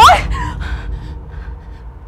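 A woman's short startled cry of 'โอ๊ย' (Thai for 'ouch!'), sharply rising in pitch and then dying away, as a drink is spilled on her.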